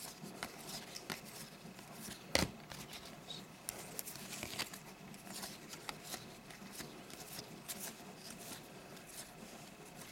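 Cardboard trading cards being flipped through one at a time, card edges sliding and faintly clicking against each other, with one sharper click about two and a half seconds in.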